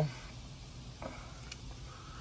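A pause with only faint low background noise and one soft tick about halfway through; no engine is running.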